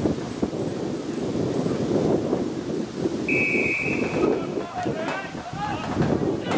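Sideline sound of a rugby match: wind on the microphone and spectators talking, with one steady whistle blast of about a second a little past the middle, followed by shouts.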